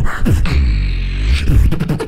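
Live beatboxing into a handheld microphone: a kick-drum sound, then a deep bass note held for about a second, then quick kick and snare sounds again near the end.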